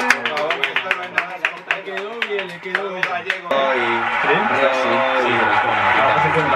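Several people clapping by hand, quick claps over a voice from the television; the clapping stops suddenly about three and a half seconds in, and the television's talk carries on.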